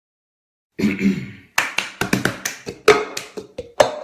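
Cup song percussion: hand claps and a clear plastic cup tapped and knocked down on a surface, a quick pattern of sharp strikes starting about a second and a half in.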